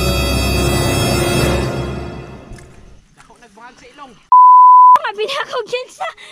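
Background music with long held chords fading out over the first few seconds, then a loud, steady, high beep tone lasting under a second, edited into the soundtrack, followed by a woman's voice.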